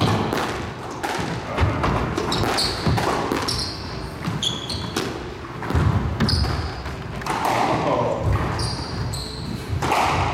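Squash rally: the ball cracks off racquets and smacks against the court walls, each hit ringing in the enclosed court, while court shoes give short high squeaks on the wooden floor.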